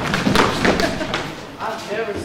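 A quick run of thuds and knocks, mostly in the first second or so: feet hitting a wooden stage floor as several performers move about, with a few voices in between.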